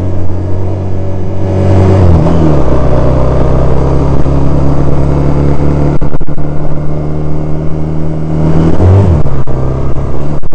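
Honda CD185 180cc four-stroke parallel-twin motorcycle engine running under way. The engine note drops about two seconds in and then holds steady. Near the end it rises briefly and settles again.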